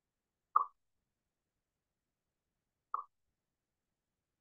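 Two short, soft pops, about two and a half seconds apart, the first louder than the second.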